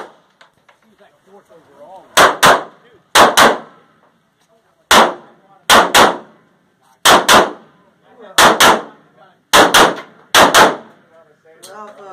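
9mm Smith & Wesson M&P Pro pistol fired in quick double taps, two shots about a quarter second apart, with a pair every second or so and one single shot in between.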